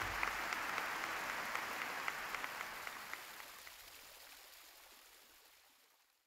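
Crowd applause, a dense patter of hand claps, fading out steadily over the last few seconds.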